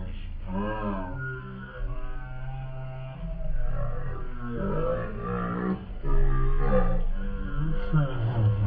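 Background music with a singing voice, held low notes under a melody that bends up and down.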